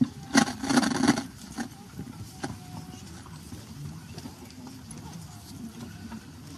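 A short burst of knocking and rustling, loudest about half a second to a second in, with faint voices murmuring in the background.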